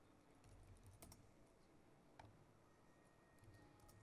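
Faint, scattered keystrokes on a laptop keyboard, a few sharp clicks with the loudest pair about a second in.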